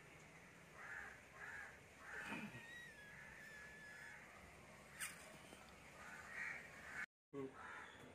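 Crows cawing faintly several times. A thin steady whistled note is heard for about a second and a half near the middle, and there is a sharp click about five seconds in.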